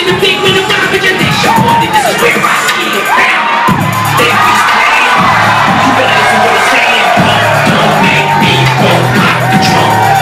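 A live hip-hop beat over a concert PA, with a repeating synth line of gliding notes and the crowd cheering and shouting over it. The heavy bass comes in about four seconds in.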